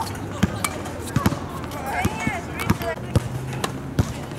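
Tennis balls being struck by rackets and bouncing on a hard court: sharp pops come in an uneven series, about a dozen in four seconds, with a faint voice or call around the middle.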